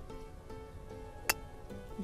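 Faint background music with one sharp click about a second and a quarter in: a golf club striking the ball on a full swing.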